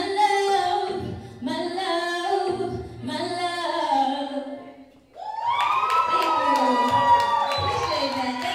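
A woman singing R&B live into a handheld microphone: a few short sung phrases, a brief break about five seconds in, then one long held high note to the end.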